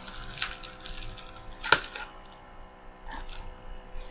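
Handling noises as a boxed product and its packaging are picked up and moved: scattered light clicks and rustles, with one sharper click or knock a little before the middle, over a faint steady hum.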